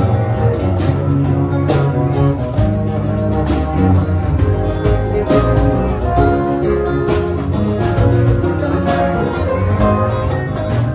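Live blues band playing an instrumental passage: an electric bass line under strummed and picked guitars, with a steady beat of percussive hits.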